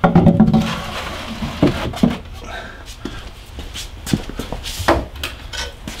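Screen-printing frames being handled: a metal screen frame scrapes as it slides into a rack, followed by a run of sharp knocks and clatters as frames bump the rack and each other.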